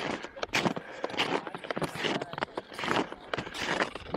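Snowshoe footsteps on a packed snow trail: an irregular run of soft crunches, several a second.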